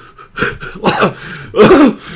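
A person's voice making three short non-speech vocal bursts about half a second apart, the last one the loudest and falling in pitch.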